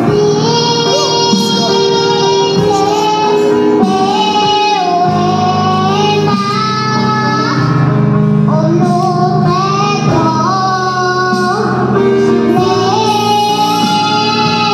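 A young girl singing a Zulu gospel worship song into a microphone, holding long notes that glide between pitches, over a steady instrumental backing with sustained low notes.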